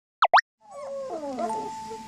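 Two quick falling 'plop' sound-effect sweeps about a quarter second in. Then a German Shepherd puppy whines and howls in wavering cries that slide down in pitch, and a steady held tone joins about halfway through.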